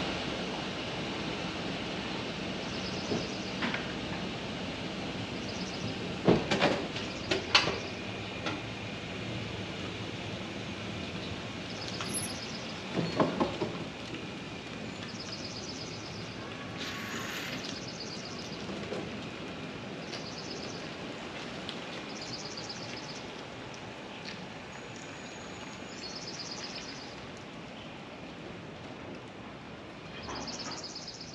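SUV slowly towing a kayak trailer away, with a few sharp clanks about six to eight seconds in and again near thirteen seconds. Birds chirp in short repeated bursts throughout.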